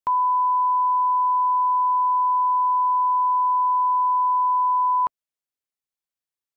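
Broadcast line-up test tone, a single steady beep at the standard 1 kHz reference pitch that accompanies colour bars on a tape or file leader. It cuts off suddenly about five seconds in.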